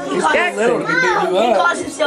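Several children's voices talking and calling out over one another, with no clear words.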